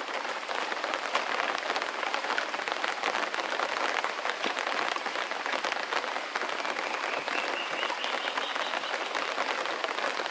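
Steady rain falling on foliage, a dense even patter of countless drops. A faint high tone comes in during the second half.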